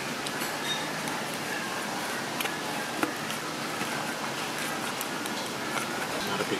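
Steady restaurant background noise, with a few light clicks of wooden chopsticks against a foam natto tub as the natto is stirred.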